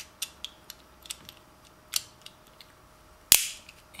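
Small plastic clicks and taps as a white plastic housing part is fitted onto a small toy gearbox, with one sharp loud snap near the end as the part clicks into place.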